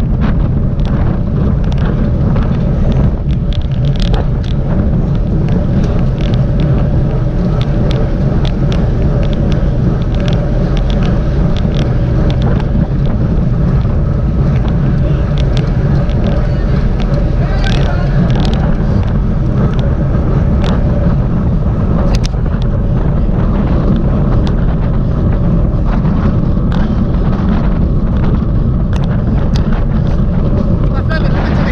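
Wind buffeting a bicycle-mounted camera's microphone at race speed: a loud, steady low rumble, with scattered sharp clicks and knocks from the moving bike.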